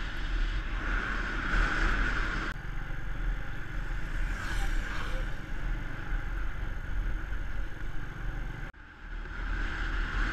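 A moving motorbike, heard from its own mounted camera: the engine runs under rushing wind noise on the microphone. The sound changes abruptly about two and a half seconds in and drops out briefly near nine seconds.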